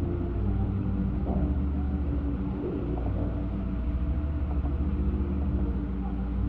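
Soft, slow background music of held notes, under the steady low hum and hiss of an old mono recording.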